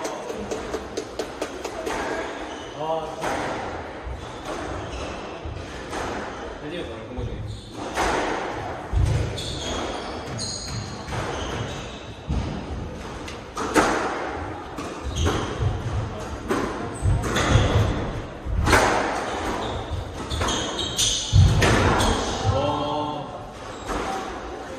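Squash rally: the ball struck by rackets and smacking the court walls, sharp hits every second or two with a low boom from the wall, with voices at times.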